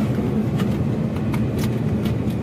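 Car driving along a road, heard from inside the cabin: a steady low rumble of engine and tyres.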